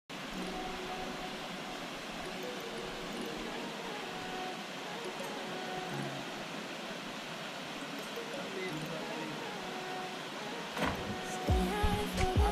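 Waterfall rushing steadily into a natural pool, with faint music under it. A sharp knock near the end, followed by louder sound.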